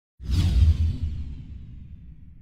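Logo sting sound effect: after a brief silence, a sudden falling whoosh over a deep boom that fades away over about a second and a half.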